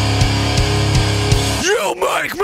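Post-hardcore band music: distorted electric guitars and drums keeping a steady beat. About one and a half seconds in, the full band drops out, leaving a wavering, pitch-bending sound.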